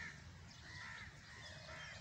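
Crows cawing faintly, several short caws spread across the two seconds.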